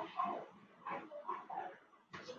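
A dog barking and whimpering in several faint, short bursts, coming through a participant's unmuted microphone on the conference call.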